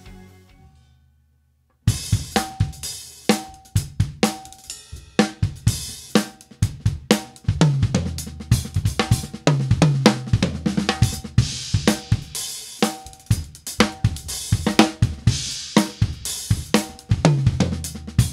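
A short music passage fades out, and after a brief silence an acoustic drum kit starts playing about two seconds in. The drumming is a fast groove and fills, moving across snare, toms, kick drum, hi-hat and cymbals with strong accents.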